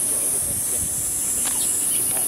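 A steady, high-pitched insect chorus from the surrounding trees, the loudest sound throughout. A faint click comes about one and a half seconds in.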